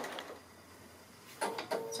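Bernina sewing machine stitching a free-motion quilting line, fading out in the first half-second, then about a second of near silence before a short sound and a spoken word near the end.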